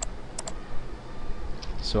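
A few sharp computer clicks: three in the first half second and one fainter about a second and a half in, over a low steady hum, then a short spoken word near the end.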